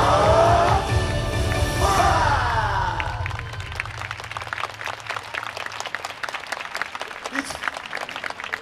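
Yosakoi dance music with voices over a heavy beat ends about three seconds in, and the audience then claps in steady applause.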